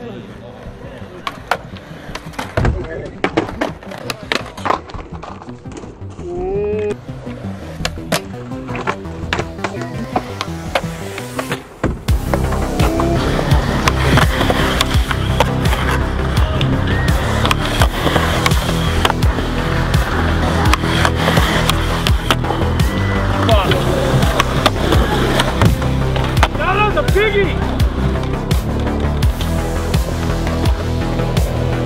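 Skateboards rolling on concrete with sharp clacks from tail pops and landings, under a music track that becomes much louder about twelve seconds in.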